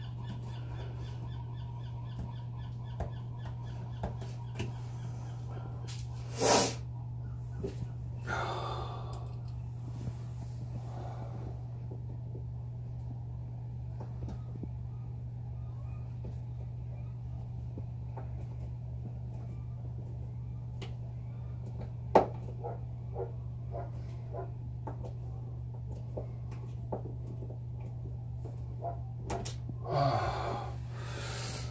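Small clicks and scrapes of hands and a screw working at a plastic charge-controller housing, over a steady low hum. There is a louder rustle about six and a half seconds in and a sharp click about 22 seconds in, followed by a run of small ticks.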